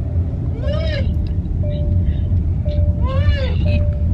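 Steady low rumble of a car being driven, heard from inside the cabin. Twice, about a second in and again past three seconds, a short voice sound rises and falls in pitch over it.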